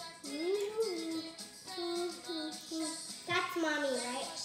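A young girl singing a tune without words, holding notes and stepping between pitches, with a falling slide in pitch near the end.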